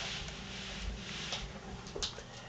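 Rustling and scuffling as a tamandua noses under a fabric curtain, with a few light clicks mixed in.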